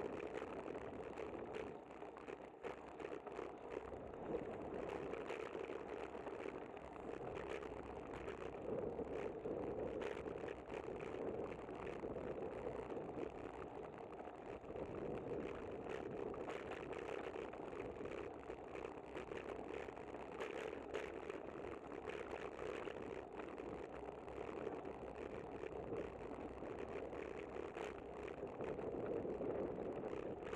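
Steady wind and road noise of a bicycle riding along a paved city street, picked up by a camera mounted on the bike, with frequent small rattles and clicks as it goes over the pavement.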